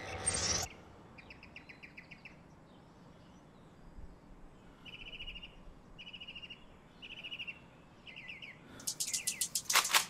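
A bird chirping in short, repeated trills, each a quick run of high notes. There is a brief swish right at the start, and a louder, sharper run of rapid clicks near the end.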